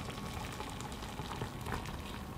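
Brewed coffee poured in a steady stream from a camp pot into a metal mug, a faint even trickle.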